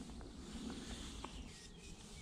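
Quiet pond-side outdoor ambience heard from inside a hide: a faint low rumble with a few soft, short ticks.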